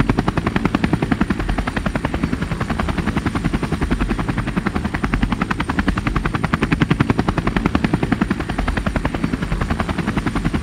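Quadcopter drone's motors and propellers heard through its own onboard camera, a fast, even chopping pulse with a thin, steady high whine above it.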